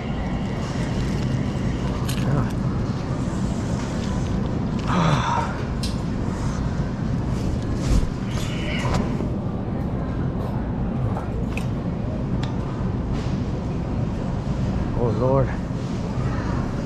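Shopping cart rolling across a smooth store floor: a steady low rumble with occasional rattles and clicks, under a background of store ambience with brief snatches of distant voices.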